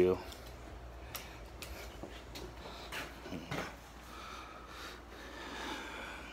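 A few faint, scattered clicks and light knocks over a low steady hum.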